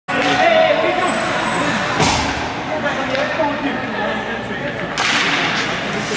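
Ice hockey play in a rink: players' shouts, a sharp crack of stick, puck or boards about two seconds in, and a longer noisy burst about five seconds in.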